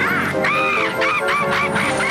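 Cartoon phoenix squawking: one long arched squawk followed by a quick run of shorter, chattering ones, over background music.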